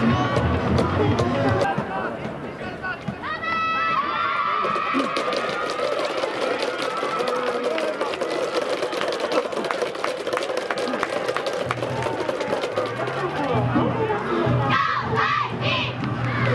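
Football stadium crowd shouting and cheering, with music and many sharp claps or drum hits. A short high tone sounds about three and a half seconds in.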